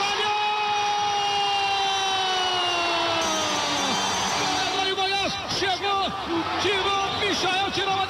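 Brazilian radio football commentator's goal call: one long held shout of about four seconds, its pitch slowly falling until it breaks off, followed by fast excited commentary.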